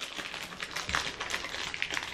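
Crinkling and crackling of a plastic bag of gummy candies being handled and opened, a dense run of small clicks, with one soft bump about halfway through.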